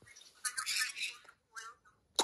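A small child's soft, breathy vocal noises, then a brief pitched sound from the child's voice just after one and a half seconds.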